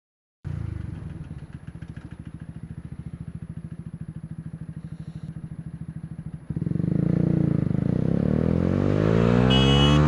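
Motorcycle engine idling with an even pulsing beat, then from about six and a half seconds in revving up as the bike pulls away, its pitch rising steadily as it accelerates.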